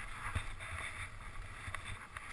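Skis hissing through soft, fresh snow as the skier descends, with wind rumbling on the camera's microphone. There are a couple of light knocks, one about a third of a second in and one near the end.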